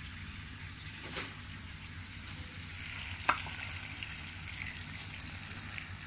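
Steady background hiss with a low hum, broken by a light knock about a second in and a short ringing clink a little past three seconds.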